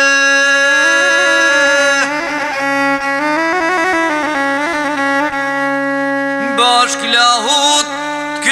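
Albanian folk music: a bowed lahuta plays a stepping melody over a steady low drone, and a man's singing voice comes back in near the end.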